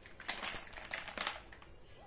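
Pucks of a wooden sling puck board clattering against each other and the wooden frame as the board is tipped upright: a quick run of hard clicks lasting about a second.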